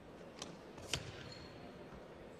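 Two sharp snaps of a karate gi as kata kicks and strikes are thrown, about half a second apart, the second louder. A low, steady hall background lies under them.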